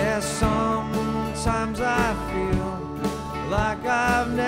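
Live acoustic folk-pop band music: acoustic string instruments over sustained low notes and a steady beat, with a melody line that bends in pitch.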